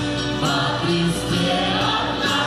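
Large mixed choir singing a Christian worship song with a live band, keyboard playing along.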